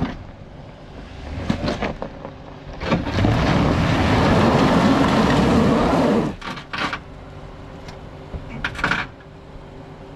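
Jeep Wrangler JK engine revving hard for about three seconds as its tyres spin on loose dirt and rock on a steep climb, then a few knocks and scrapes as the underbody skid plate hits the rocks.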